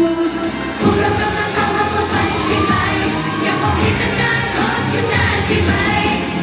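Idol-pop song played live, with a driving beat and female voices singing; the full beat comes back in strongly about a second in after a brief dip.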